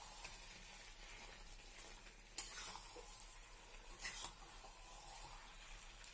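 Chicken and potato curry sizzling faintly in a kadai while a spatula stirs it to keep the masala from catching on the bottom, with two sharp knocks about two and a half and four seconds in.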